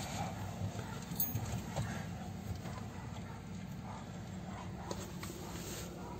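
A car engine idling with a low, steady rumble, heard from inside the stopped car's cabin, with a few faint ticks.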